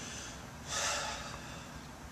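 A person's single short breath, about a second in, over a steady faint hiss.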